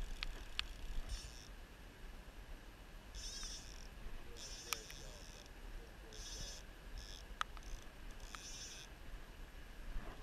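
A fly reel's click-and-pawl ratchet buzzing in about six short bursts of roughly half a second each, as line moves on the reel of a spey rod bent under a hooked steelhead. A few sharp clicks fall between the bursts, over a low rumble of wind and water on the microphone.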